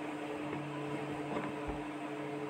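Steady background hum with a faint, even hiss: room noise with no speech.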